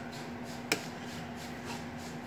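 Quiet room tone with a faint steady hum, broken by one short, sharp click less than a second in.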